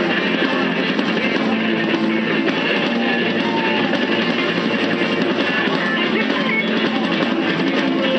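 Small rock band playing live, an instrumental passage with guitars, keyboard, drum kit and flute at a steady, even loudness.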